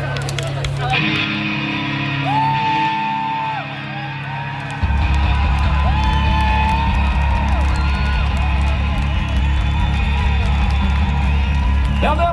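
Rock concert music over an outdoor PA: sustained intro tones that jump to a loud, steady low drone about five seconds in. The crowd whoops and cheers over it.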